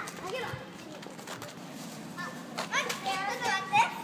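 Children's high-pitched voices calling and squealing as they play, with a louder burst of rising shouts in the last second and a half.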